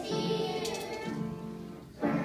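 Young children's choir singing with instrumental accompaniment, in two held phrases, with the sound dropping away just before the end.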